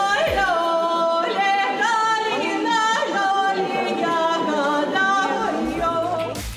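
A young woman singing solo into a microphone in Belarusian folk style, in long held notes with vibrato.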